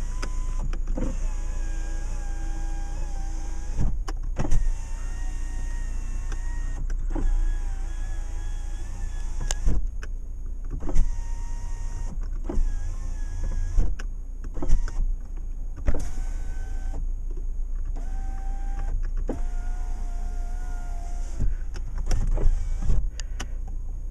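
Power window motors of a 2006 Volkswagen Jetta running, the windows raised and lowered in turn: a series of steady motor whines a few seconds long, each ending in a click or knock as the glass reaches its stop. The engine idles underneath as a steady low hum.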